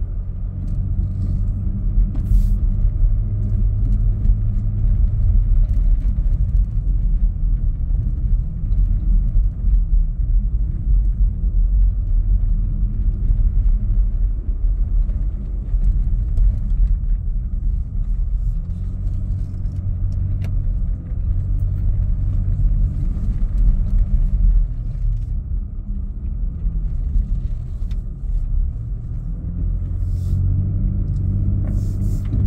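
Vehicle engine and tyre rumble on a snow-packed road, heard from inside the cabin: a steady low drone.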